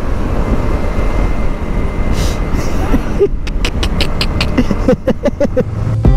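Wind rush and road noise from a motorcycle riding at speed on a highway, heard on a body-mounted camera. About halfway through, a run of quick clicks with short pitched notes starts over the rumble.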